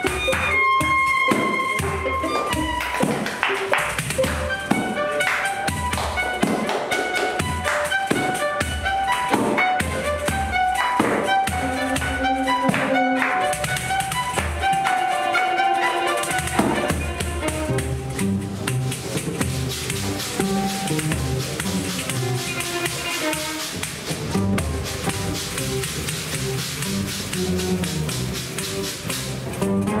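Live instrumental music: two violins bowing a melody over a pandeiro, the Brazilian frame drum with jingles, played with crisp hand strokes. The percussion is busiest in the first half, and the violins play longer, lower lines in the second half.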